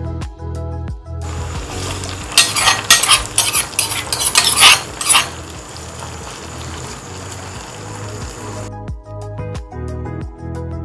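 Curry leaves hitting hot coconut oil in a small cast-iron tempering pan with shallots, garlic and dry red chillies. The oil spits and crackles loudly for about three seconds, then settles to a steady sizzle that stops near the end, with background music at the start and the end.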